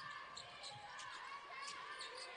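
A basketball bouncing on a hardwood court a few times, short sharp thuds heard faintly over the arena's background hum.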